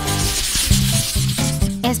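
A noisy whoosh, the transition sound effect for a scene change, over background music; the whoosh fades out about a second in and the music carries on with its bass line.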